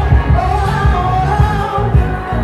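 R&B song performed live through a club PA: a female voice singing into a microphone over a backing track with a heavy bass beat.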